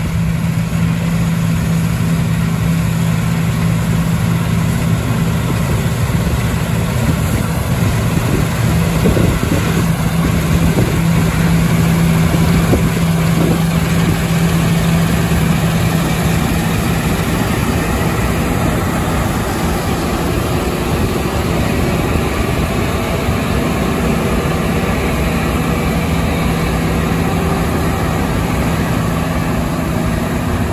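CLAAS Lexion 760 TT combine harvester cutting and threshing standing wheat. Its Caterpillar C13 diesel runs under steady load beneath the noise of the machine, giving a continuous loud drone with a strong low hum that eases somewhat after about the midpoint.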